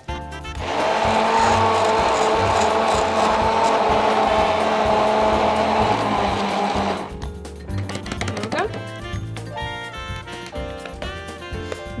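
Immersion (stick) blender whirring steadily in a plastic beaker, blending desiccated coconut with hot water into coconut milk. It starts just under a second in and stops about seven seconds in, leaving background music with a steady beat.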